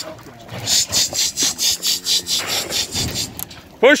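A rapid, regular rubbing or scraping noise, about four to five strokes a second.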